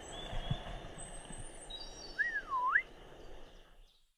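Open-field ambience: a steady low rush of wind on the microphone with faint high bird chirps. About two seconds in, a bird gives one clear whistled call that dips and rises again in pitch, the loudest sound. The sound fades out near the end.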